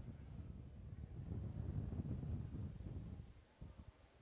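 Low, gusty rumble of wind on an outdoor microphone at the launch pad, dropping away near the end.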